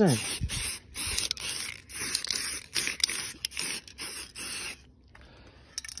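Aerosol can of Auto Extreme matte black spray paint hissing in short repeated bursts, about three a second, then stopping suddenly about five seconds in.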